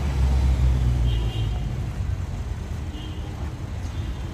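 City street traffic: a vehicle passes close with a low rumble in the first second or so, then a steady traffic hum. Two short high tones sound about a second in and again about three seconds in.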